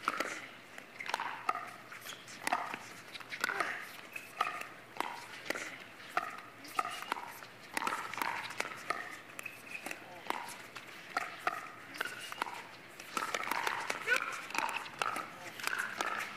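Pickleball paddles striking a hollow plastic ball in a long rally, a sharp pop about once a second, with faint voices in the background.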